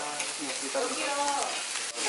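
Food sizzling in pans on tabletop gas burners: a steady hiss.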